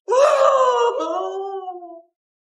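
A person's drawn-out wailing cry without words, in two long held phrases: the first loudest, the second lower in pitch and fading out at the end.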